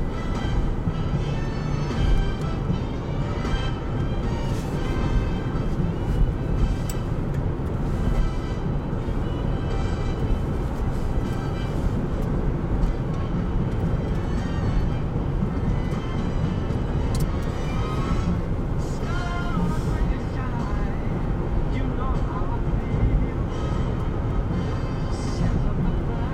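Steady road and engine noise inside a moving car's cabin at highway speed, with music playing underneath, including some vocals.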